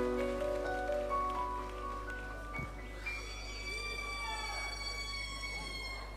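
Orchestral instruments holding long, overlapping notes whose pitches change in steps. From about halfway a single high note is held on.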